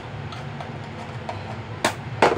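Kitchen utensils and containers being handled at the counter: a few faint ticks, then one sharp click near the end, over a steady low hum.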